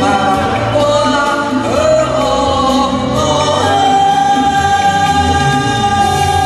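A man and a woman singing a Vietnamese karaoke duet into microphones over a backing track through a PA. Near the end a voice holds one long, steady note.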